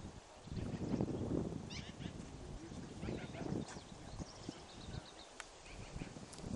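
Farm animal sounds outdoors: a low swell of noise about a second in and another around three seconds, with several short, high bird chirps scattered through the middle.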